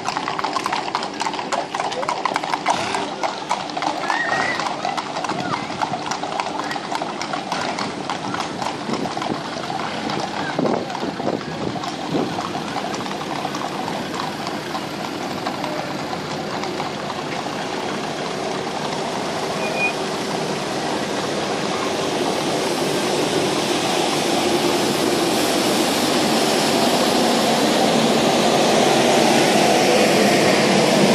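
Horses' hooves clip-clopping on a tarmac road as a mounted procession walks past, many overlapping hoofbeats. In the second half a steady vehicle noise builds and grows louder toward the end.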